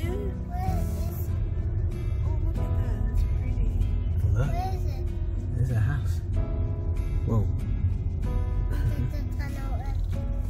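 Instrumental Christmas background music with steady sustained notes, over a constant low rumble of car road noise.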